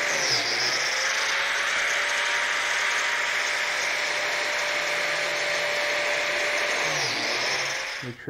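Biscuit (plate) joiner running and plunging to cut slots for number 20 biscuits in oak: a steady motor whine with a hiss from the spinning blade. The pitch dips about half a second in as the blade loads in the cut, and again near the end.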